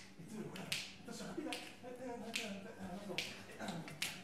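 A choir snapping their fingers together on a steady beat, about one snap every 0.8 seconds, with low voices underneath.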